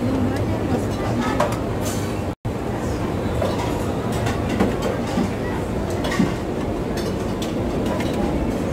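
Busy buffet-restaurant din: a steady low rumble of crowd chatter and room hum, with a few light clicks of metal tongs on steel serving trays. The sound cuts out completely for an instant a little over two seconds in.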